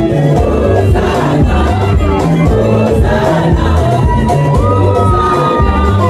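Live gospel worship music played loud through a PA: singers over a band with a strong bass line, the crowd singing and shouting along. Near the end a singer holds one long high note.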